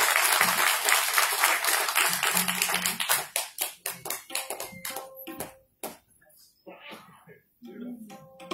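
Audience applauding: dense clapping that thins out after about three seconds into a few scattered claps and dies away about six seconds in.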